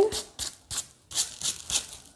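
Coarse salt crystals being brushed off dry watercolour paper by hand: several short, gritty rubbing strokes with a light rattle of grains.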